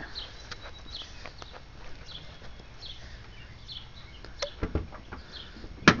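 Birds chirping in the background, short high chirps every second or so, with a few light clicks and knocks from handling the car after the midpoint and a sharp click near the end.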